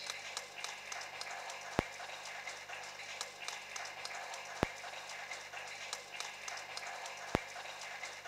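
Audience applauding steadily in a large hall, with three sharp clicks standing out about three seconds apart.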